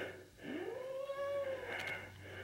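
Domestic cat giving one long, drawn-out yowl that rises in pitch, holds for about a second, then dips slightly as it ends.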